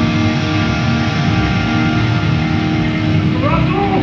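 Death metal band playing live: distorted electric guitars, bass guitar and a drum kit at full volume, with a few short sliding pitches near the end.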